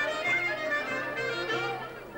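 Traditional Greek Macedonian folk dance music: a wavering melody on a clarinet-like wind instrument over a low, evenly pulsing accompaniment, dipping briefly in level near the end.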